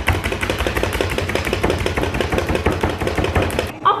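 Hand-operated plunger food chopper pumped rapidly to crush graham crackers: fast, even clattering strokes of the blade and plunger that stop shortly before the end.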